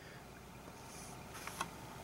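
Quiet room tone with a low steady hum, and two faint clicks about one and a half seconds in.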